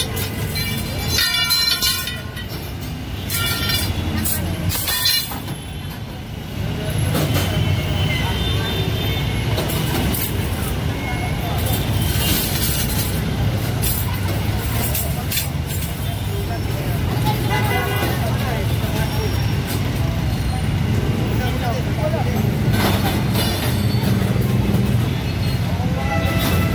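Busy street traffic: vehicle engines running steadily, a short horn toot about a second in, and people talking around.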